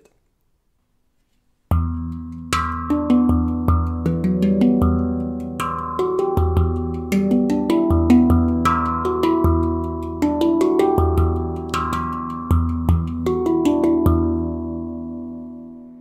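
A handpan played: deep strikes on the central ding between rhythmic taps and short melodic runs on the tone fields. It starts after about two seconds of silence, and the last notes ring out and fade near the end.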